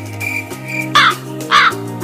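Crow cawing three times, about half a second apart, starting about a second in, over background music with long held notes.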